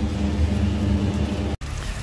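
Steady low machine hum over background noise, cut off abruptly about one and a half seconds in.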